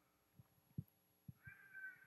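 Near silence in a large hall, with a few faint soft knocks and a brief, faint high-pitched tone near the end.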